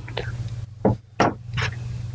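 A few short knocks and clicks, about four in two seconds, from a tablet and a small camera being handled and moved on a desk, over a steady low hum.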